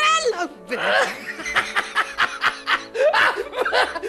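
Rapid, repeated laughter over backing music with sustained notes.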